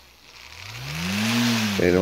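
Small electric motor with a propeller spinning up: a whir that rises in pitch and loudness over about a second, with a rush of air from the blade, then eases slightly.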